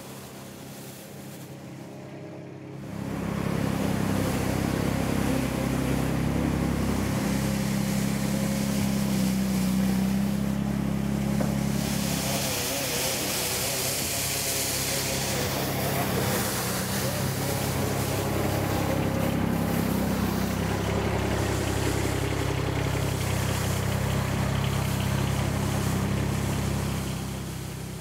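Compact sidewalk sweeping machine running steadily with its rotating brushes turning on wet paving stones, the machine sound coming in about three seconds in, with a brighter hiss partway through.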